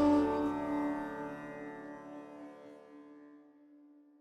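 The last sitar note ringing on with its sympathetic strings and fading to silence over about three and a half seconds, ending the piece.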